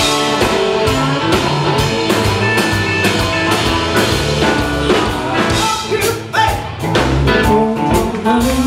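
Live blues band playing: electric and acoustic guitars over a drum kit, with a singer, loud and steady with a brief drop about six seconds in.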